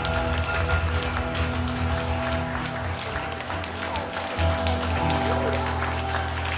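Acoustic guitar played live, chords strummed with their notes ringing on over a deep low note.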